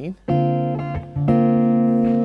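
Ibanez RG5170B electric guitar played clean through a Laney amp on the neck Fluence humbucker, with the Fluence voicing switch in its back position. Two chords are strummed about a second apart, and the second is left ringing.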